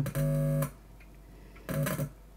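Electrical buzz from a cassette digitizer's circuit board, a low steady pitched tone that comes on as a probe touches the board: for about half a second at the start, then again briefly near the end with a click. At this point on the board the hum is loud.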